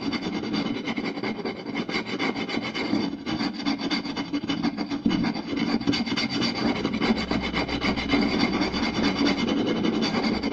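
Fingers scratching and rubbing fast over a round wooden plate: a dense, unbroken scratching with no pauses.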